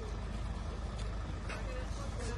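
Parked ambulance van's engine idling, a steady low rumble, with faint voices of people standing around.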